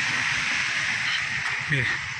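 Steady rushing hiss of water gushing out of a leaking water pump and running down the street.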